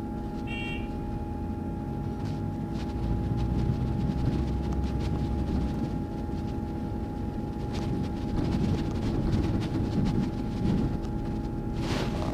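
Double-decker bus driving along a street, heard from inside on the upper deck: a steady low rumble with a faint constant whine. A short high chirp sounds about half a second in.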